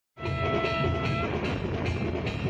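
Tutari, a long curved brass horn, blown in one steady held note for about a second, followed by a rougher, noisier blare.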